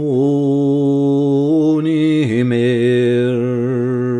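Unaccompanied male voice singing a Scots traditional ballad, drawing out the words in long held notes. One note is held for about two seconds, then the voice slides down to a lower note and holds it.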